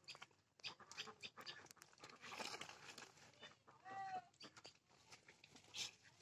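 Near silence with faint outdoor ambience: scattered small chirps and clicks, and one brief faint animal call about four seconds in.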